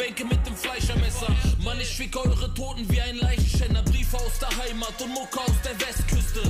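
A German-language hip-hop track: a man rapping in German over a beat with deep bass hits and fast hi-hats.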